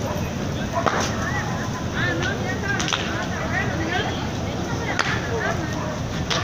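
Electrical transformer fire burning with a steady rushing noise, broken by sharp cracks about a second, three seconds and five seconds in.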